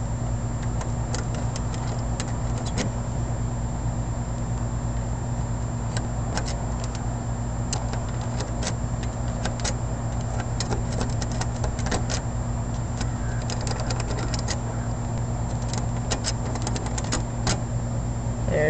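Metal lock pick and tension wrench working the pin tumblers of a sliding patio door lock: light, irregular metallic ticks and scrapes that come thicker near the end. A steady low hum runs underneath.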